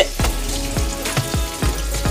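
Fish frying in hot oil, a steady sizzle, with soft low thumps about three or four times a second as a hand presses fish into a pan of dry seasoned coating.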